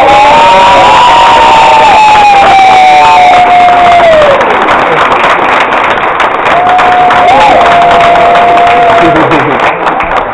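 Audience cheering and applauding, loud, with long whoops: one held and slowly falling over the first few seconds, and another in the second half.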